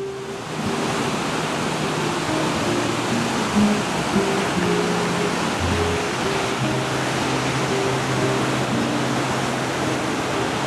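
Steady rushing of river water tumbling over a small falls and through rocky rapids. A melody of short held low notes, background music, runs over it.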